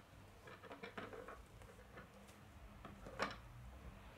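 Small Lego brick model being nudged and turned on a wooden tabletop: faint scattered clicks and taps of plastic on wood, with one sharper tap about three seconds in.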